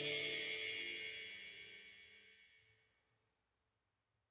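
The closing notes of a hymn's backing track: high tinkling wind-chime notes ring out over the fading music and die away in about two and a half seconds, then silence.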